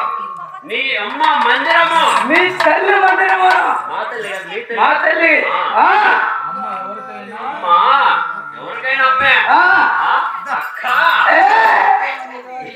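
A performer's voice, loud and nearly unbroken, its pitch sweeping up and down in stage dialogue.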